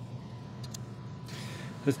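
Low steady background hum with a couple of faint clicks from an Allen wrench tightening the limb-pocket lockdown screw on a compound bow, then a brief soft rustle of the bow being handled near the end.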